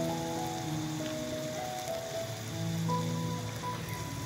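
Soft background music of held notes changing every second or so, over a steady sizzle from vegetables frying in a small pan over a wood fire.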